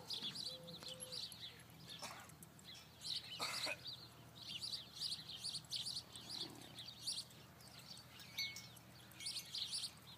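Small birds chirping and twittering faintly in the background, in many short high calls scattered throughout, with a soft knock about three and a half seconds in.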